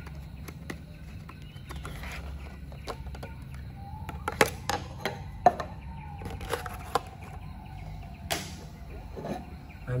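A clear plastic blister pack being pulled apart and handled: crackling clicks of stiff plastic, a long creak as it flexes, and one sharp crackle near the end. A steady low hum runs underneath.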